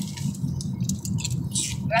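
Steady low road-and-engine rumble inside a moving car's cabin, with a few short wet mouth clicks and smacks from chewing hard candy.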